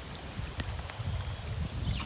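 Faint sound of rainwater runoff flowing through a flooded pig pen and along a trail, with a few small drip-like ticks, over a low, uneven rumble on the microphone.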